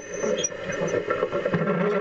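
Ox-drawn row cultivator's steel sweeps scraping through soil and crop residue, with a few knocks from the implement and a thin high squeal early on.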